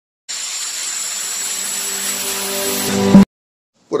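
Intro sound effect: a loud steady hiss with a low hum beneath, swelling to a brief peak about three seconds in, then cutting off suddenly.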